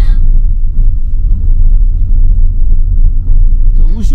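Car driving on a gravel road, heard from inside the cabin: a loud, steady low rumble of tyres and engine.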